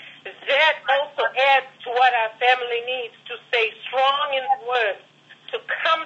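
Speech only: a voice talking continuously over a telephone line, sounding thin and narrow, with a short pause about five seconds in.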